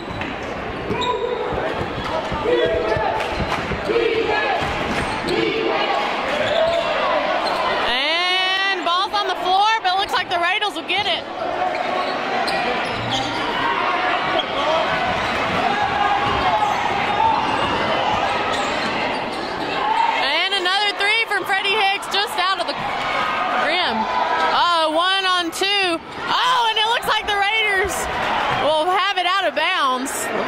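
Basketball being dribbled and bouncing on a hardwood gym floor during live play, with shouting voices in a large, echoing gym.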